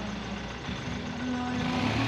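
Motorcycle engine running steadily at low revs, without revving, as the bike is eased over muddy landslide rubble close by.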